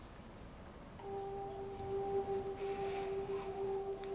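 A single held musical note, a soft steady drone, comes in about a second in and carries on without changing pitch, with a faint hiss partway through.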